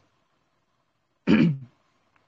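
A man clears his throat once, briefly, a little over a second in, between stretches of near silence.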